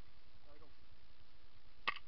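A single short, sharp crack with a slight ringing edge near the end, over a faint steady background.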